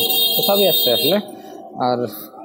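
A steady, high-pitched electronic beep from a digital multimeter, held for over a second and cutting off about a second in, with a man talking over it.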